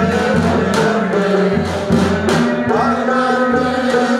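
Choir singing a folk song in held, sustained notes over a steady rhythmic drum-like percussion accompaniment.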